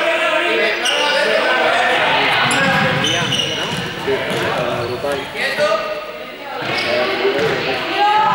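Many young people's voices calling and chattering at once in a large, echoing sports hall, mixed with the thuds of a ball bouncing and running feet on the court floor.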